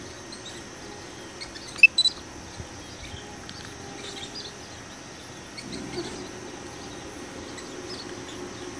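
Outdoor ambience with a steady faint hiss, broken about two seconds in by two or three short, sharp, high chirps of a bird.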